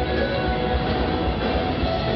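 Live band music led by several electric guitars playing together, with keyboard and a low bass end, loud and dense.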